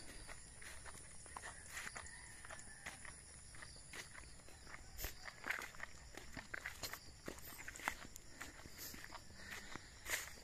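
Faint footsteps of a person walking along a muddy dirt path through grass, in short, irregular steps.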